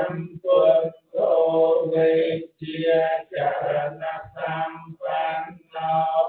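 Buddhist monks chanting: male voices reciting on a nearly level pitch in short, even syllables, with brief pauses for breath.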